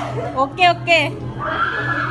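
Two short, high-pitched cries falling in pitch about half a second and a second in, then a held wavering voice, over a steady low hum.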